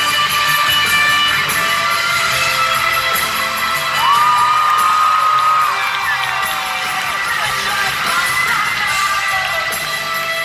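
A live rock band with electric guitar plays in an arena, and the crowd cheers and shouts over it. About four seconds in, a high note slides up and is held for nearly two seconds.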